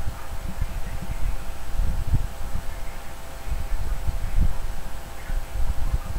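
Handling noise from a dress being pulled on over a silicone doll: irregular low bumps and cloth rustling, over a faint steady hum.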